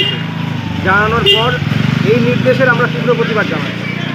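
A man speaking, with a motor vehicle's engine running under the voice as a low steady drone.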